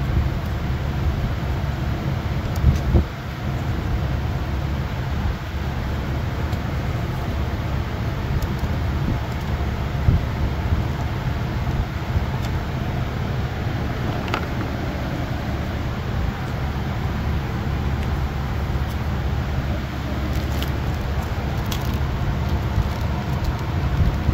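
Steady low rumble with a few light clicks and taps from hand work in a car's under-hood fuse box.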